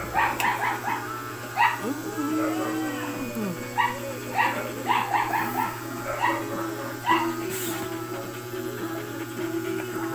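A dog whining in short, high-pitched yips and whimpers, over and over, with music playing in the background.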